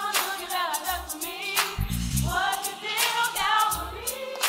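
Church gospel choir singing a praise song together over instrumental backing.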